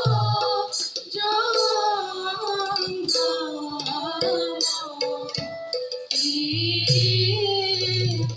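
A choir of women and men singing a Borgeet (Assamese devotional song) in unison, with harmonium, small tal hand cymbals clashing in a steady beat, and khol drum strokes near the start and again from about six and a half seconds in.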